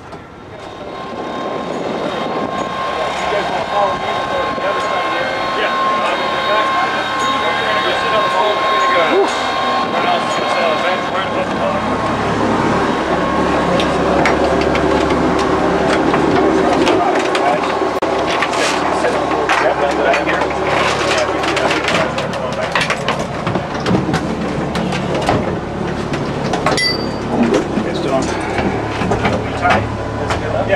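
The B-24 Liberator's Pratt & Whitney R-1830 radial engines running. The noise builds over the first two seconds to a loud, steady drone. In the second half there are scattered knocks and clatter from inside the fuselage.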